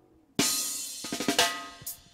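Roots reggae recording: after a brief near-silence, the drum kit breaks in suddenly about half a second in with a cymbal crash and a run of snare and drum hits.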